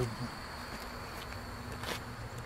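Gas-fired burner of a model steam boat's boiler running with a steady hiss and a faint hum, with one short click near the end.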